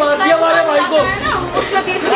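A man's raised voice arguing heatedly, with other voices talking over him.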